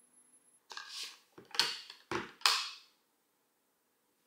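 Handling noise from an AirPods Pro 2 charging case and its cardboard packaging being unboxed: a soft rustle, then three sharper plastic-and-card clacks and scrapes, the last the loudest, stopping about three seconds in.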